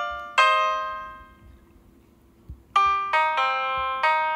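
Piano tones from the Perfect Piano touchscreen app, played by tapping the screen. A chord rings and fades away, there is a pause of about a second, and then a run of notes starts near the end. A soft tap of a finger on the screen comes just before the notes resume.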